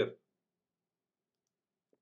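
The end of a spoken word, then near silence with a single faint computer-mouse click near the end.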